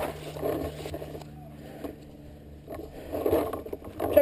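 Rustling and scraping handling noise from a camera mounted on a paintball gun's barrel as the player moves, louder in the first second and again near the end, over a faint steady low hum.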